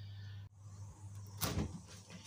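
A single short bump about one and a half seconds in, from the door of a converted fridge used as a fermentation chamber being handled while it stands open, over low background hiss.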